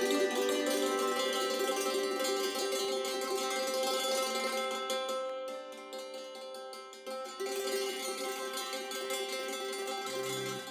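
Hammered dulcimer struck with mallets, layered with looped electronic parts. The music thins out about five seconds in and comes back fuller at about seven and a half seconds.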